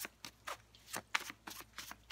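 A tarot deck being shuffled by hand, overhand style: a quick run of short card slaps, about four or five a second.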